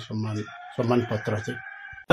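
A rooster crowing once, fainter than the man's speech over it. It is one long call of about a second and a half that starts about half a second in.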